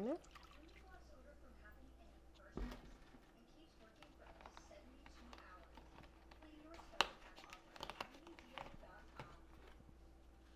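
Half-and-half pouring from a measuring cup into a mixing bowl for a moment at the start, then mostly faint kitchen sounds. A soft thump about two and a half seconds in comes as the carton is set down on the counter, then a sharp click around seven seconds and a few lighter clicks after it.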